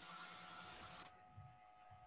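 Near silence: a faint steady hiss with a thin high tone, which cuts off abruptly about a second in, leaving only faint steady tones.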